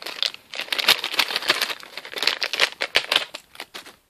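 Packaging crinkling and crumpling in quick, irregular crackles as a toy figure is unwrapped by hand, cutting off suddenly at the end.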